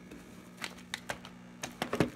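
Cardboard baking soda box being pushed into place on a wooden shelf: a run of light clicks and taps as it knocks and scrapes against the shelf, the sharpest near the end.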